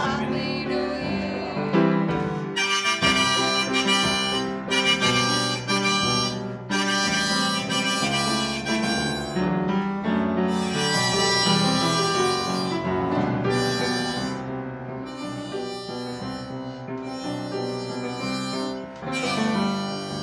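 Harmonica playing a melody with sustained chords over an upright piano accompaniment, an instrumental passage with no singing.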